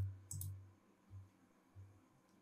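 A faint computer mouse click about half a second in, over a low electrical hum from the microphone, then near quiet.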